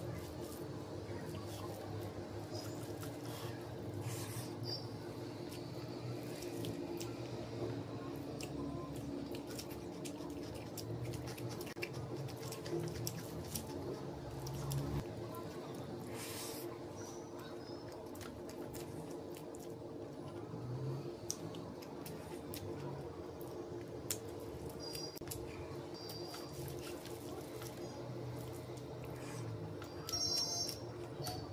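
Close-miked eating sounds of rice and egg curry mixed and eaten by hand: wet squishing and many small mouth clicks, over a steady low hum.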